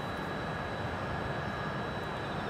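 Steady outdoor background noise: an even, continuous hiss with a low rumble underneath and a faint steady high tone, with no distinct event.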